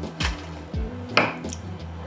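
A knife trimming the rind off a piece of Camembert: two sharp cuts about a second apart. Background music with a low beat runs underneath.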